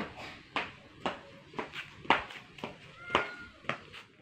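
Marching footsteps: a cadet's shoes striking a hard porch floor at a steady quick-march pace of about two steps a second.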